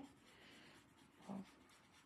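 Faint scratching of a pencil-like drawing tool being worked over a card drawing tile.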